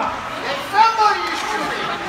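Spectators chatting, several voices at once, with one voice standing out just before a second in.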